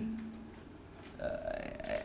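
A short pause in a man's talk, then a quiet, drawn-out hesitation "uh" starting about a second in.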